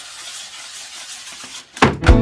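A steady hiss, then a loud thump near the end as a glass liqueur bottle (Baileys Almande) is set down hard on a wooden tabletop.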